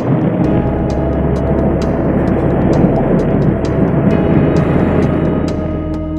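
Calm ambient background music with a steady low drone comes in about half a second in, over a dense rumble of vehicle noise that thins out near the end.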